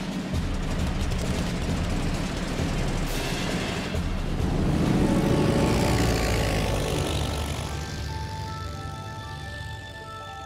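Propeller-aircraft engine drone that builds to a peak about halfway through and then fades, under soundtrack music whose held notes take over near the end.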